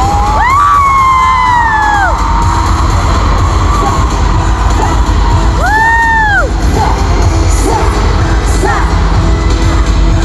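Loud live K-pop music through arena speakers, recorded on a phone in the audience, with a heavy, dense bass. High screams rise and fall in pitch over it about half a second in and again about six seconds in.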